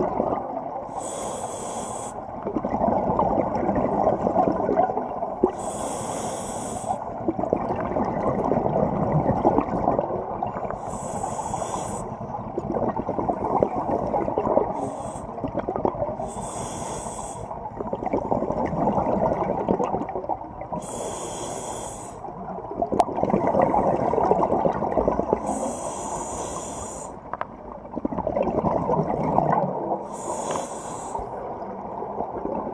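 Scuba regulator breathing heard underwater: about six hissing inhalations, roughly one every five seconds, each followed by the low rumbling gurgle of exhaled bubbles.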